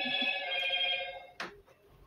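A steady electronic ringing tone of several pitches, like a phone ringtone, lasting about a second and a half and ending with a sharp click.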